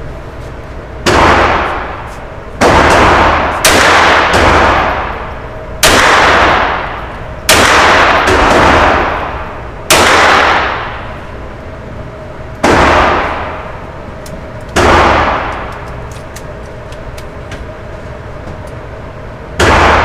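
Pistol fired shot by shot in an indoor shooting range: nine loud reports at irregular intervals of one to two and a half seconds. Each shot is followed by a long ringing echo off the range walls, and a pause of about five seconds comes before the last shot near the end.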